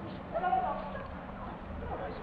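People talking, the words not clear enough to make out, over a steady background hum; the voices are loudest about half a second in.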